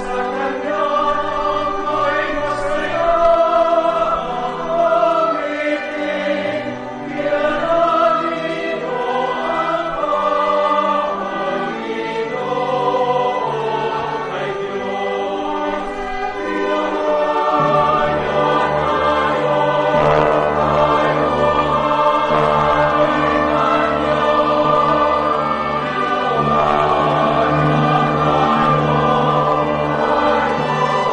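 Church choir singing a processional hymn with instrumental accompaniment; a steady low bass line comes in about halfway through.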